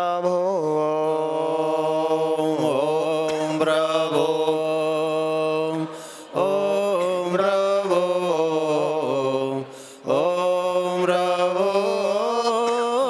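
A solo male voice chanting a devotional mantra in long, held, melodic phrases, pausing briefly for breath about six seconds in and again about ten seconds in.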